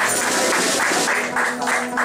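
Live acoustic music: a held guitar chord under a steady beat of hand percussion, about four or five strokes a second.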